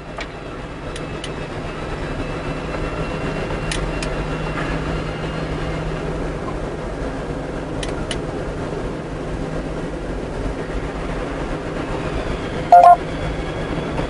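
Steady low mechanical hum, with a few faint clicks and one short, loud tone near the end.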